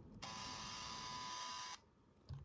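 Canon compact camera's motorized zoom lens zooming in with a steady, high buzzing grind that sounds like a barber's razor, lasting about a second and a half and stopping suddenly. The noise is the sign of a lens damaged when the camera was dropped down stairs.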